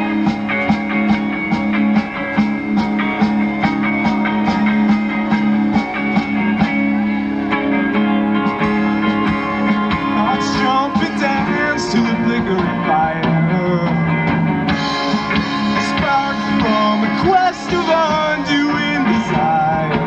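Live rock band playing an instrumental passage between verses: electric guitars, bass and drums at a steady beat. About halfway through, a lead line of wavering, bending notes comes in over the band.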